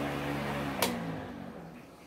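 A steady mechanical hum, like a small electric motor, stops with a sharp click about a second in, and its pitch then falls away as it winds down.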